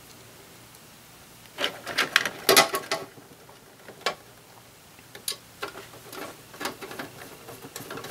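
A screwdriver and small screws clicking and knocking against a steel computer case's drive bay while a drive is screwed in. There is a quick run of clicks about two seconds in, single clicks around four and five seconds in, then lighter ticks.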